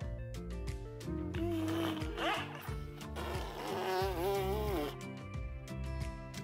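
Background music, with a wavering, voice-like melody line that comes in about a second in and fades out near five seconds.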